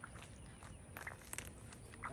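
Faint outdoor ambience: a low, steady rumble with a few soft clicks and knocks, two of them sharper about a second in.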